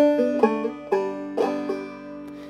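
Banjo played clawhammer style: a short phrase of plucked notes, about two a second, with a slide into the last note on the third string, which is left ringing near the end.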